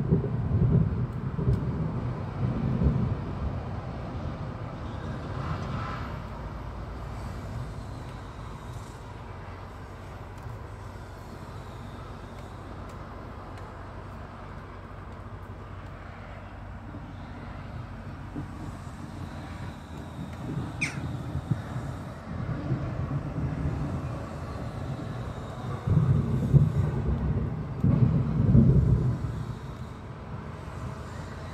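Wind gusting against the phone's microphone, an uneven low buffeting that is strongest at the start and again in two bursts near the end, over a steady low outdoor rumble as a storm approaches.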